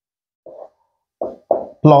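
A pause with dead silence, then a man's short spoken syllables near the end as he resumes talking.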